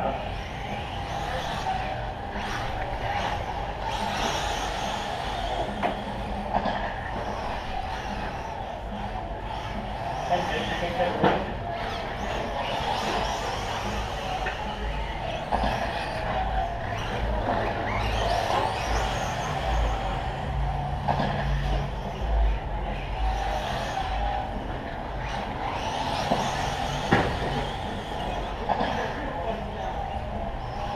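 Radio-controlled short course trucks racing on a dirt track: a steady mix of small motors and tyres on dirt, with a couple of sharp knocks about a third of the way in and near the end.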